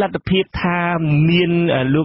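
A man's voice reading radio news in Khmer, holding one syllable drawn out at a steady pitch for about a second.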